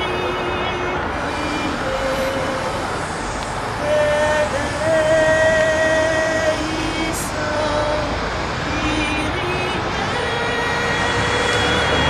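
A woman's voice singing slowly and unaccompanied, in long held notes that step from pitch to pitch, over a steady hum of road traffic.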